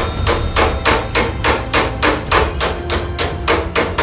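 Hammer blows on the sheet-steel body of a Toyota Land Cruiser FJ70 during dent work: a quick, even series of about fourteen sharp strikes, three to four a second, that stops just before the end.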